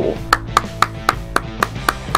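One person clapping at a steady pace, about four claps a second.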